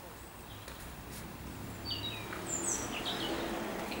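A bird chirping in short, high, falling notes, starting about halfway through, over faint background noise.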